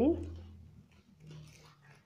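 A spoken word trails off at the start. Then comes faint, soft rustling of flat plastic craft wire being handled and knotted.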